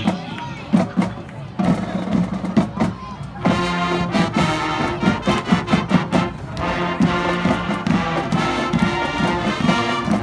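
A school marching band plays a fight song. A few drum strokes come first, then the full band of brass and drums comes in about three and a half seconds in.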